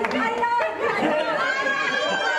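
A group of people talking and cheering over each other, with a high-pitched voice held for about half a second near the end.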